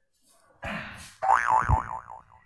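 A short whoosh, then a loud wobbling cartoon 'boing' spring sound effect whose pitch wavers up and down about four times a second before trailing off.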